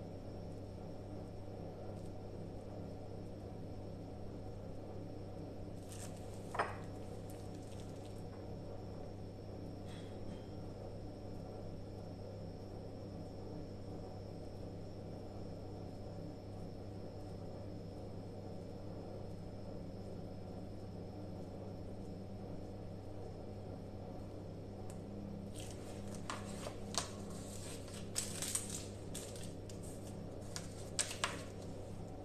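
Steady low hum with a faint high whine. A single sharp click comes about six seconds in. Near the end there are quick crinkles and clicks as a plastic piping bag is handled and set down.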